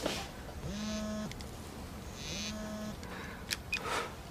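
Mobile phone vibrating in the hand: two short buzzes about a second and a half apart, each rising briefly in pitch as the motor spins up. A few faint clicks follow near the end.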